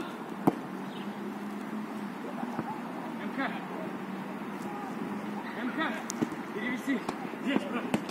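A football kicked hard once, a sharp thud about half a second in, followed later by a few lighter knocks of the ball being played.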